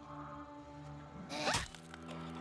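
Katana blade stabbing through a zombie's skull: a sudden, short stab sound effect about a second and a half in. It plays over a low, held drone of background score.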